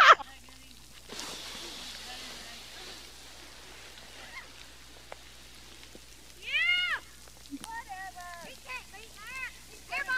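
A high-pitched voice calling: one long call that rises and falls in pitch about six and a half seconds in, then several shorter calls. A faint hiss is heard for a couple of seconds near the start.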